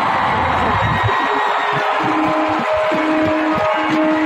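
Arena audience cheering, fading away about a second in as a live band begins a slow instrumental intro of long held notes.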